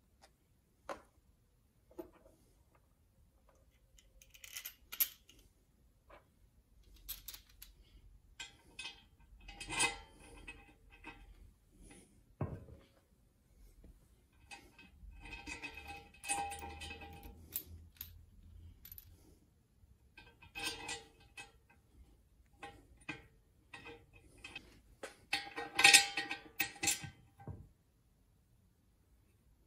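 Small metal parts clinking and rattling against an aluminium oil pan as bolts are threaded into an oil cooler block-off plate and run down with a hand ratchet. There are scattered single clicks, then clattery spells, busiest near the middle and loudest near the end.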